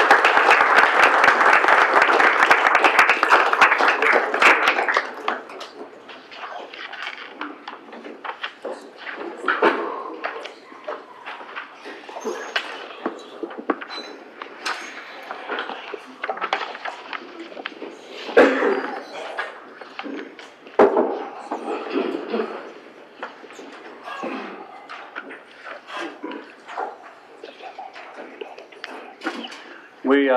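Audience applause for about the first five seconds, a dense patter of claps in a large hall. It gives way to a quieter murmur of voices with scattered knocks and thumps as people move about.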